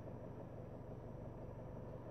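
Faint, steady low hum of a car heard from inside its cabin, with no change through the pause.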